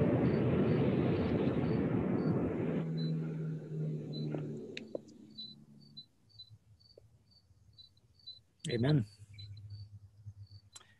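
The closing bars of a recorded song played through a screen share: a full sustained chord that thins out about three seconds in to a low held note, which fades away by about six seconds. Near the end a brief voice-like sound is heard.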